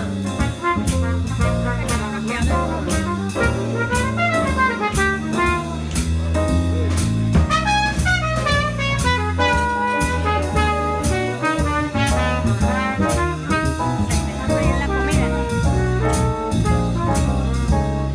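Live small jazz band: a trumpet plays a solo over piano and drum kit accompaniment.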